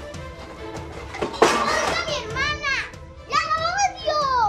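A young girl's wordless tantrum cries: two high, wavering yells, the second sliding down in pitch, over background music. A sudden loud burst about a second and a half in precedes them.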